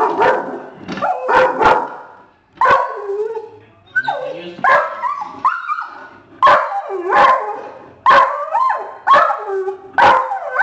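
A dog's whining bark, given over and over: sharp yelping barks run together with drawn-out whines that slide in pitch, one to two a second with short pauses. It is the particular bark this dog keeps for deer, an alarm at deer in sight.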